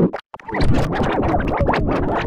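Heavily effects-processed logo audio. It cuts out briefly just after the start, then turns into a fast, jittery clatter of short clicks and wobbling, warbling pitch blips.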